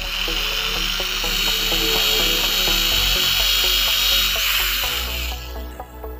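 Electric drill with a thin bit boring into the end of a wooden rod, a steady high-pitched whir that fades out near the end, with background music underneath.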